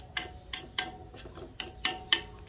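Chopsticks tapping and scraping against a metal wok as the pan's contents are stirred: about six light clicks at an uneven pace, each with a faint ring from the pan.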